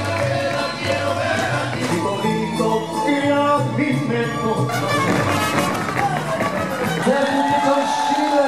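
Live mariachi-style Mexican band music with a male singer. Near the end a voice sweeps up into a long held note.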